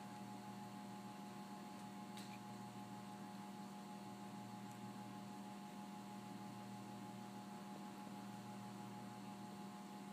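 Steady low electrical hum with a faint, steady higher whine above it, the running of lab equipment.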